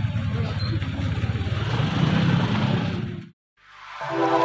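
A motor vehicle's engine running steadily, with faint voices of a crowd around it. It cuts off abruptly about three seconds in; after a moment of silence, outro music begins.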